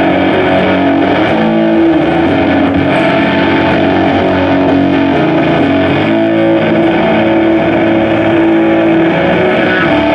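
Distorted electric guitar played loud on a semi-hollow-body guitar through an amplifier, with held notes and chords that change every second or so.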